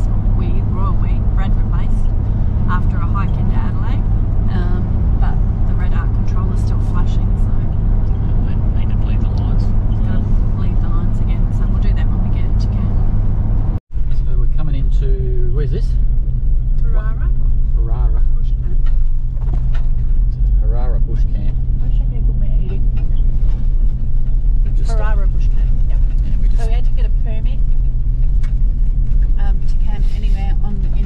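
Steady low drone of a 4WD's engine and road noise heard from inside the cabin while driving. The sound cuts out for an instant about 14 seconds in, then the drone carries on.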